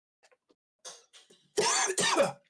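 A man coughing about one and a half seconds in, after a mostly quiet stretch; the cough comes from the burn of an extremely hot chili lollipop.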